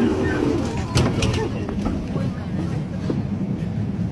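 Low rumble of a Kryvyi Rih Metrotram car, with a few sharp clicks about a second in and short high chirps and voices in the background.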